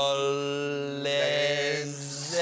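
Two men singing together in a mock musical-theatre style, holding long steady notes, moving to a new note about a second in.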